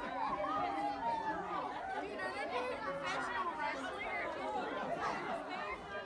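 Indistinct chatter of many people talking at once, with no single voice or words standing out.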